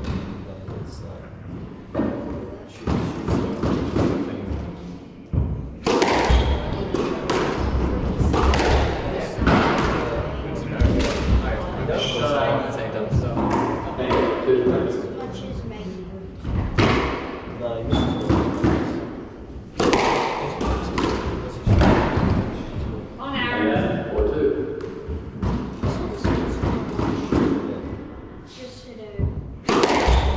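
A squash rally: the ball repeatedly thuds off the rackets, the front and side walls and the glass back wall, with the players' footsteps on the wooden court floor.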